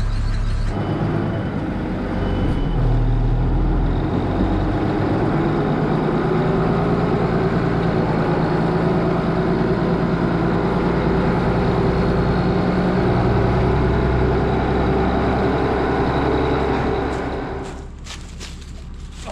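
Tractor diesel engine, a Case IH 1455, running steadily at working speed, heard from inside the cab. It gets a little louder about two to three seconds in, and the sound drops away near the end.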